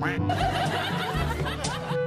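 Laughter sound effect, a burst of snickering laughter, played over background music.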